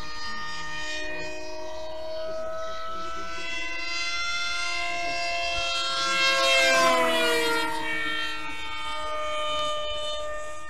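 Electric motor and propeller of a brushless-converted Carl Goldberg Mirage model airplane whining steadily in flight. About seven seconds in it swells and drops in pitch as the plane passes close by.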